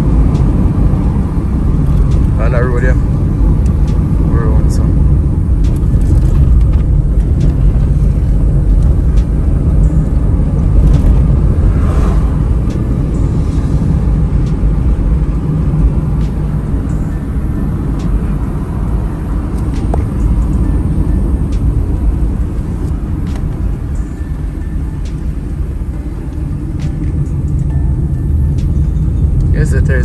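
Road noise inside a moving car's cabin: a steady low rumble of engine and tyres that eases slightly about three-quarters of the way through, with a couple of brief voices early on.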